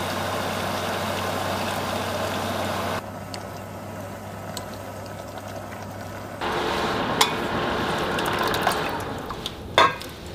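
Water boiling in an enamel pot, with greens being blanched in it and stirred with chopsticks, which click now and then against the pot. A low steady hum runs under the first three seconds, and a sharp knock comes just before the end.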